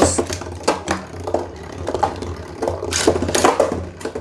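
Two Beyblade spinning tops, Meteo L-Drago and Galaxy Pegasus, ripped from a launcher and then spinning in a plastic stadium with a steady low whirr. They clash with sharp clicks, loudest in a quick run of hits about three seconds in.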